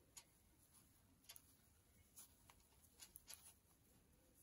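Faint, irregular clicks of metal knitting needle tips tapping together as stitches are knit, about half a dozen over near silence.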